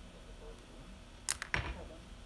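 A ceramic mug set down on a desk: a few sharp clicks and knocks in quick succession about a second and a half in, with a brief scrape after them.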